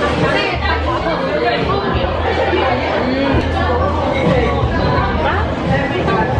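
Background chatter of many people talking at once in a busy café, steady throughout, with no single voice standing out.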